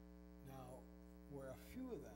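Steady electrical mains hum with many evenly spaced overtones, under two short snatches of a man's quiet speech, one about a quarter of the way in and one near the end.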